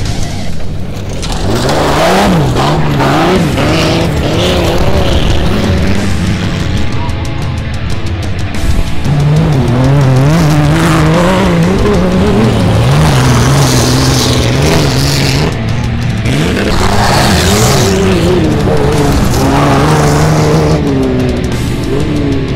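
Off-road rally buggies speeding past on a dirt track, their engines revving up and down repeatedly as they go by, with rock music underneath.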